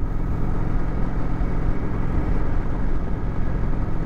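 Kawasaki Vulcan cruiser motorcycle's engine running steadily at road speed, with wind and road noise, heard from the rider's seat.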